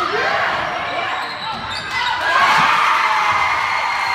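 Basketball game sounds on a hardwood gym court: the ball bouncing, sneakers squeaking and voices from the players and crowd, which grow louder about halfway through.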